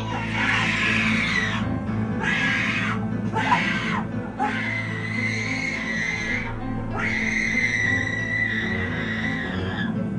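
Droning haunted-house background music with a steady low hum. Over it come a series of high screeches or screams: short ones in the first few seconds, then two long drawn-out ones of about two seconds each.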